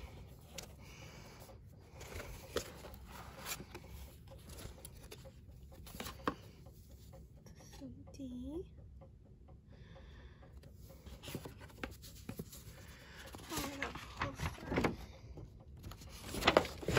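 Cardboard album box and paper inserts being handled: soft scrapes, taps and rustles as a lid is lifted and sheets and a CD tray are moved about, with a brief hummed voice sound about eight seconds in.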